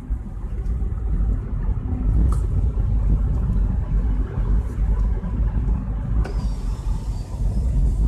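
Seat Mii with a 1.0-litre three-cylinder petrol engine driving over a rough, potholed track: a steady low rumble of engine and road noise.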